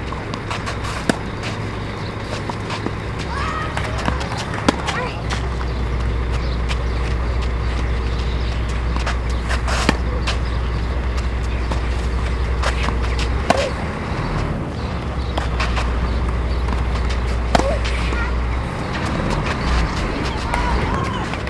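Tennis rally on a clay court: a ball struck by rackets, sharp pops about every three to four seconds, over a steady low rumble on the microphone.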